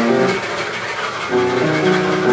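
Live jazz trio playing: the drumming thins out early on, and a slow run of held melody notes steps up and down in the second half.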